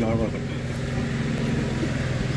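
A steady low engine hum from a motor vehicle running close by, with a man's voice briefly at the start.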